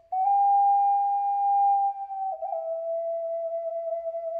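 Ocarina playing solo and unaccompanied: a pure, nearly overtone-free note held for about two seconds, then a step down to a lower note that is held on.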